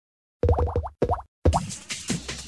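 Gazeta.pl logo sting: three quick runs of short, bubbly plops, each rising in pitch, as the cartoon bubbles of the logo pop in.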